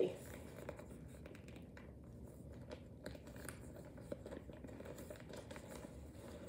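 Faint rustling and light scratching of paper and plastic kit packaging being handled, over a steady low background hum.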